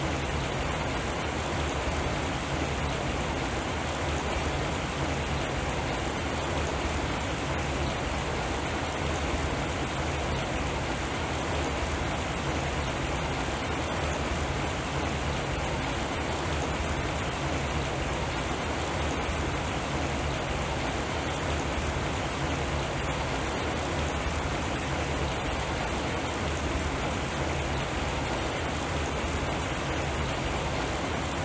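Steady rain-like water noise with a low steady hum beneath it, unbroken throughout: the electronic sound of a SuperCollider- and Arduino-driven water sound sculpture.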